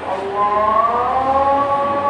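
A loud, siren-like wailing tone that comes in a fraction of a second in, rises slightly in pitch, then holds steady.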